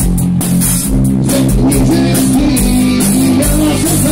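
A rock band playing loudly and live, with guitars, an electric bass guitar and a drum kit.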